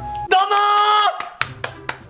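A loud held pitched sound, lasting under a second, followed by several sharp hand claps about a quarter second apart.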